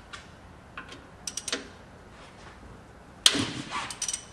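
Ratchet wrench on a car's oil drain plug: a few scattered ratchet clicks, a quick run of ticks about a second and a half in, then a sharp metallic clank about three seconds in that rings briefly.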